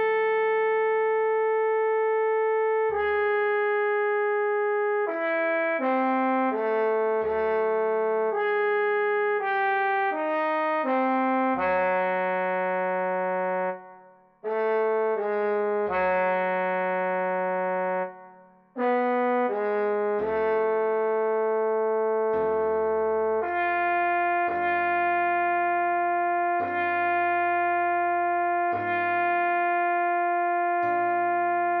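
Trombone playing a slow, sustained melody over a piano backing track, at half speed. The held notes change every second or so, with two brief breaks about halfway through.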